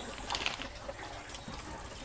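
Donkeys braying at a distance, restless because they want to be let out of their pen.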